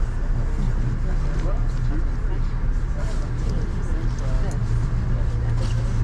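Inside a stopped passenger train car: the train's steady low hum runs throughout, with other passengers' voices talking indistinctly in the background.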